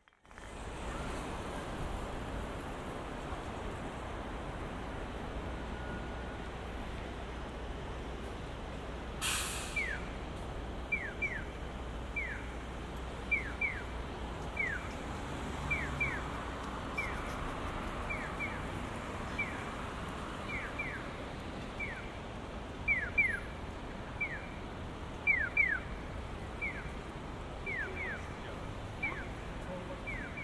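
Steady street traffic noise with a short hiss about nine seconds in. Then a Japanese audible pedestrian-crossing signal starts: electronic bird-like 'piyo' chirps falling in pitch, single calls and double calls answering each other. It signals that the crossing is green for pedestrians.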